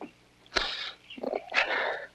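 A man's breathy, choked sobbing: two noisy gasps of breath, one about half a second in and a longer one near the end, from a man fighting back tears.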